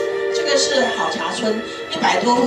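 A voice played back from a video through a room's speakers, speaking over background music with long held notes. The talking starts about half a second in.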